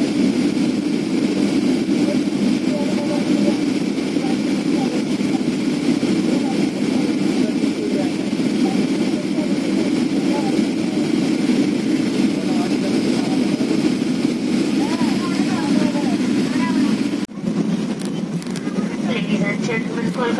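Steady drone of an airliner's engines and airflow heard from inside the cabin on the night approach, with faint passenger voices under it. It breaks off briefly near the end, then the drone resumes with the plane on the runway.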